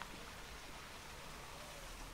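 Faint, steady outdoor background hiss with no distinct events.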